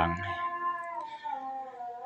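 A long, drawn-out, high-pitched animal call, holding one pitch and then sliding gently lower about a second in.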